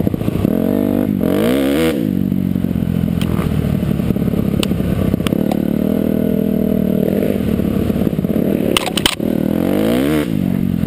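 Dirt bike engine running under way, its pitch rising and falling with the throttle, with a quick rev up and back down about a second and a half in. Scattered sharp clacks come through, and near the end the engine note drops out briefly among a couple of clacks.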